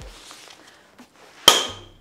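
Mammut airbag test tool trigger firing as the shoulder-strap handle is pulled: one sharp click about one and a half seconds in, with a brief high ring after it. This is the sound of a correctly pulled and triggered system.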